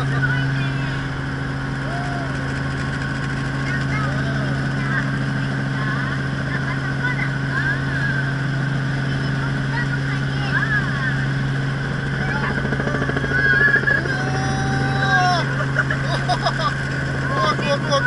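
Robinson R44 helicopter heard from inside its cabin: the steady low drone of its piston engine and rotors, holding an even pitch throughout.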